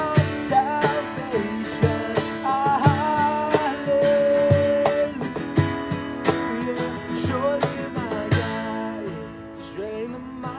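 Two acoustic guitars playing an instrumental passage of a worship song: steady strummed chords with a melody line over them, including one long held note midway, growing softer near the end.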